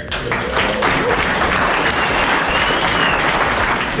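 A small seated audience applauding, a steady patter of many hands clapping.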